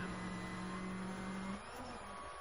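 Rally car engine at high revs, heard from inside the cabin, holding one steady note with gravel road noise underneath. About one and a half seconds in, the note breaks off briefly.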